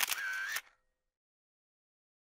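A camera-shutter sound effect accompanying a logo reveal: one short burst of about half a second with a brief ring, then nothing.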